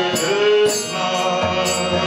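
Kirtan: a voice chanting a mantra over a sustained drone, with hand cymbals struck on a steady beat.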